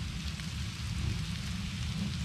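Lobster tails, shrimp and vegetables sizzling on a hot grill: a steady crackling hiss, with a low rumble underneath.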